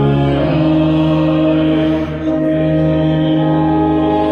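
Church organ playing slow, sustained chords, changing chord about half a second in.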